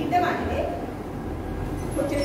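A woman's lecturing voice in a room, briefly at the start, over a low steady rumble.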